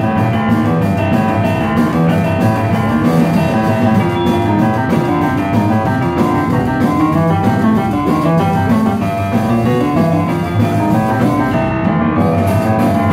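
Live rock-and-roll band playing an instrumental passage with no vocals: grand piano playing busy, fast notes over upright bass and a drum kit.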